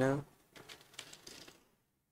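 Computer keyboard typing: a quick run of faint key clicks lasting about a second, just after a spoken word ends.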